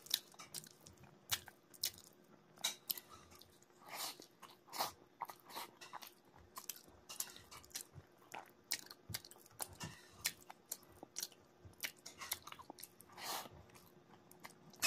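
Close-up eating sounds of a mouthful of rice and fish curry eaten by hand: quiet chewing with frequent irregular wet mouth clicks and smacks.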